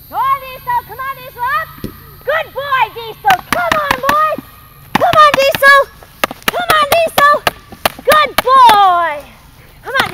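A rapid string of short, high-pitched, excited vocal calls, rising and falling yips or whoops, with a few sharp clicks among them in the middle.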